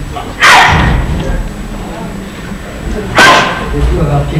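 Two short, loud shouts, one about half a second in and one about three seconds in, of the kind martial artists give with each technique in a demonstration.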